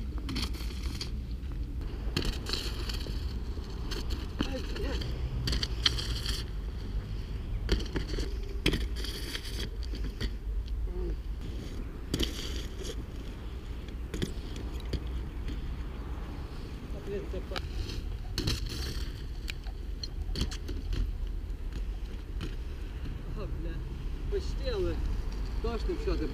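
Bicycle tyres rolling and scraping over snow-dusted paving stones, with repeated short scrapes and knocks from the bike, over a steady low rumble of wind on the microphone.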